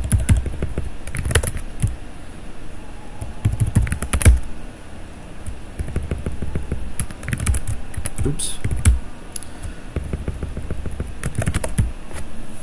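Typing on a computer keyboard: short quick runs of keystrokes separated by pauses of a second or two.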